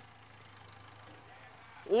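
A faint, steady low hum under a pause in speech, with speech starting again near the end.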